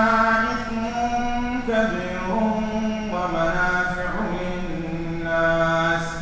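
A man chanting Quranic recitation in long, held melodic notes that step up and down in pitch, broken by short pauses for breath.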